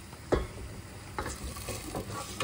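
A spatula stirring a sauce in a stainless steel pot on a gas hob, knocking sharply against the pot about a third of a second in and again a little past a second, followed by a few light clicks, over a steady sizzle.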